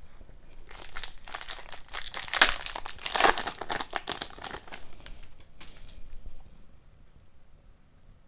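Foil wrapper of an Upper Deck Series Two hockey card pack being torn open and crinkled by hand, loudest a few seconds in, then dying down to faint handling near the end.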